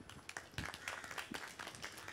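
An audience applauding with scattered, irregular hand claps.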